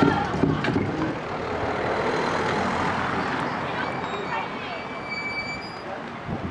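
A car driving past, its engine and tyre noise slowly fading, with voices in the background.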